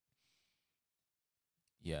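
Near silence, broken by one faint, short breathy exhale lasting about half a second, a quarter second in; speech begins near the end.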